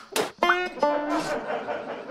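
A music sting of plucked guitar: a sharp strum-like attack, then a few separate plucked notes that ring and die away.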